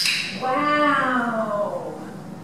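A sharp click, then one long vocal call with many overtones that slides slowly down in pitch for about a second and a half.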